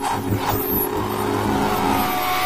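Sound design of an animated channel logo intro: a dense, noisy whoosh that keeps building, with a brief high falling sweep about half a second in.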